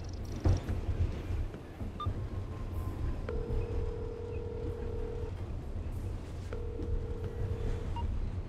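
Film soundtrack with a low steady rumble, a thump about half a second in, and two held mid-pitched tones in the second half, each lasting about one and a half to two seconds.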